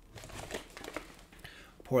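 Paper rustling and soft handling noises as a large book is lifted and held open, faint, with a few small ticks.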